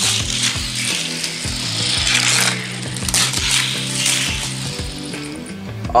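Die-cast Hot Wheels car rolling along plastic track, a rattling, clicking run over the track joints and loop pieces, with steady background music underneath.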